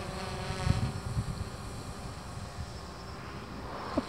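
DJI Phantom 3 Professional quadcopter climbing, its motors and propellers heard from the ground as a hum of several steady tones that fades after the first second or so, over a low rumble.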